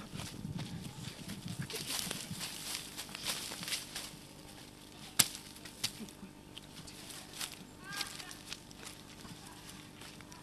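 Scattered sharp knocks and rustling from manual work with hand tools among felled logs and brush. The loudest is a single sharp knock about five seconds in.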